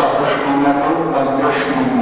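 A small brass auction gong rings with a loud, sustained, slightly wavering tone, struck to mark the sale of a lot.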